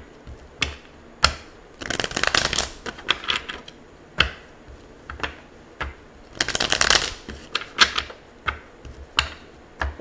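A tarot deck shuffled by hand on a table: separate sharp card snaps and taps, with two longer rapid riffles of cards, one about two seconds in and one just past halfway.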